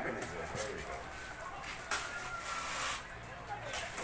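Gift-wrapping paper being rustled and torn off a boxed present, with one long rip lasting about a second near the middle.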